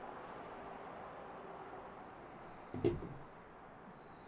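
Low, steady outdoor background noise with no speech. About three seconds in there is one short, louder low sound.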